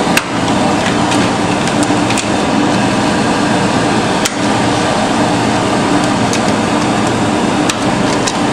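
Steady hum and hiss of projection-booth machinery, with a few sharp clicks as 35mm film is threaded by hand through the projector's sprockets and rollers and their guides are snapped shut.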